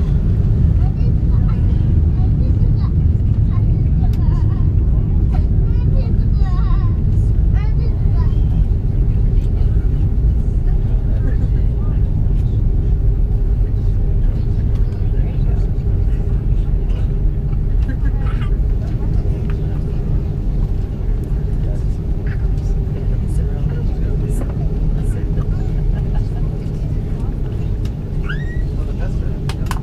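Cabin noise aboard an Airbus A330-343 taxiing: a steady low rumble from its Rolls-Royce Trent 700 engines at taxi power and the airflow, with a steady hum over it.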